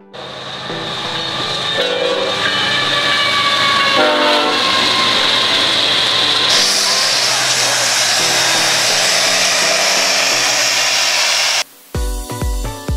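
Diesel freight locomotives passing close by, their engines running under a loud rush of rail noise, with a chord of the air horn sounding about two seconds and again about four seconds in. The sound cuts off abruptly just before the end.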